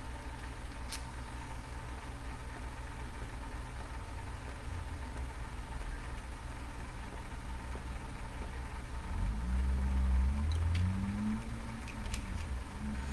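A cigar being relit over a steady low electrical hum: a single click about a second in, then low hummed "mm" sounds between about nine and eleven seconds in as the smoker draws on it.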